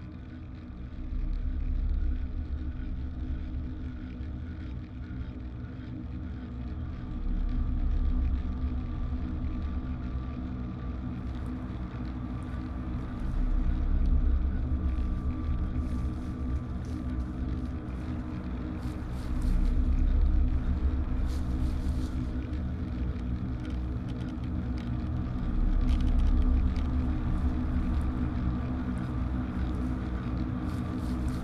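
Low, rumbling ambient drone of a suspense film soundtrack, sustained low tones swelling and easing about every six seconds. Faint scattered crackles join it from about a third of the way in.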